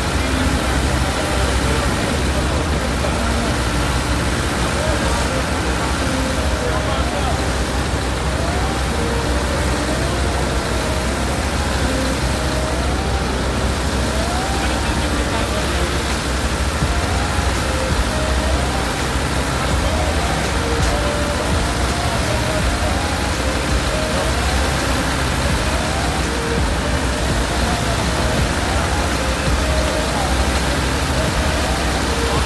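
Street noise at a fire scene: a steady low rumble of vehicles and running engines, with voices in the background. A faint short rising tone repeats about once a second from about a quarter of the way in.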